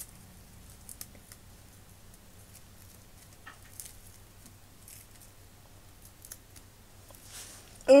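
Faint, scattered soft ticks and rustles of satin ribbon being handled and pulled into a knot by fingers, over a low steady hum.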